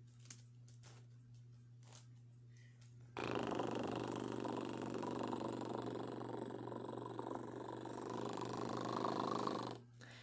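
A steady, rough rasping noise that begins abruptly about three seconds in and cuts off just before the end, after a few faint clicks in near silence.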